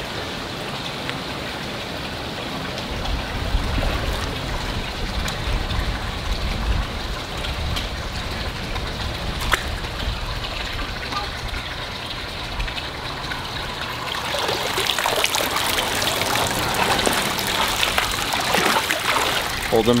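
Steady running, trickling water in a shallow backyard pond, with splashing as a large fish is grabbed by hand. The splashing grows busier and louder about two-thirds of the way through.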